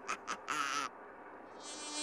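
A short snickering laugh, then a housefly's buzz, amplified through a chain of megaphones, that swells up near the end.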